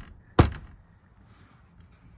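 A single sharp tap about half a second in: a hand patting the freshly polished, painted bumperette of a Porsche Boxster, followed by faint background.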